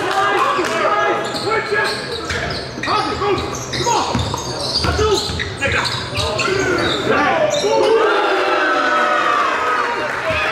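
A basketball dribbled on a hardwood gym floor, with many short, high sneaker squeaks from players cutting and stopping, and a longer run of squeals near the end. The gym's large hall gives it an echo.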